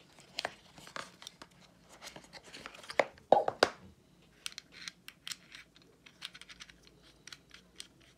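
Handling of a vape pen and its cardboard box: knocks and rustling as the tank and battery are lifted out, loudest in a cluster of knocks a little past three seconds in. Through the second half, a run of small sharp clicks as the metal tank is screwed onto the battery.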